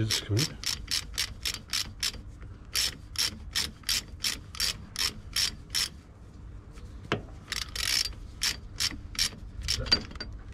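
Hand ratchet clicking in several runs of quick strokes, with short pauses, as a rear brake caliper bolt is undone.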